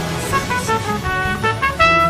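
Trumpet playing a fast run of short, separate notes, about five a second, with a louder, higher note near the end.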